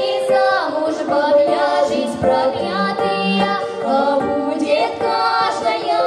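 Female folk vocal group singing a Russian stradaniya in harmony, several voices holding long notes together with sliding phrase endings.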